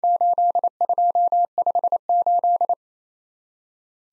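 Morse code in a steady electronic tone at 28 words per minute, sending the group 8, 2, 5, 8 as a run of long and short beeps that stops about two thirds of the way through.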